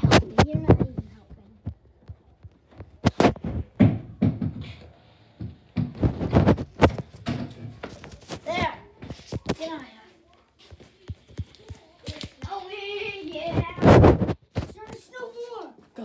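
Scattered knocks and thuds of things being bumped and handled, several a second in places, with the loudest thud near the end.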